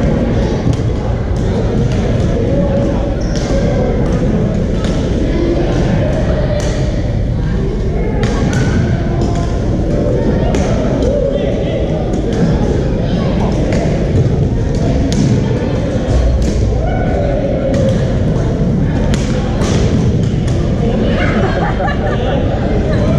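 Badminton rackets striking shuttlecocks, heard as many irregular sharp pops from several courts, with thudding footsteps. Under it runs the constant chatter of many players, echoing in a large gym.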